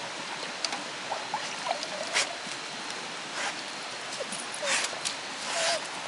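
English pointer plunging its muzzle into a metal bucket of water after trout: about five short splashes, with a few brief high whines from the dog in between.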